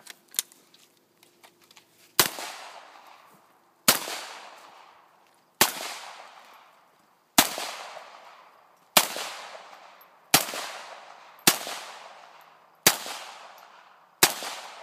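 Semi-automatic pistol fired eight times at a steady pace, about one shot every second and a half, each shot followed by a long echo dying away.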